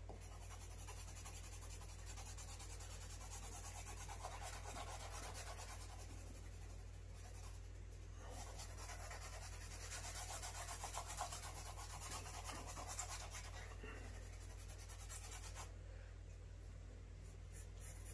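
2B graphite pencil scratching on sketchbook paper in quick back-and-forth strokes, laying down an even layer of shading; the strokes fade out near the end.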